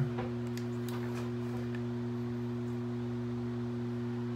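A steady low hum of a few held tones, unchanging throughout, with a few faint clicks.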